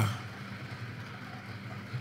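Steady low background hum over a faint, even wash of noise.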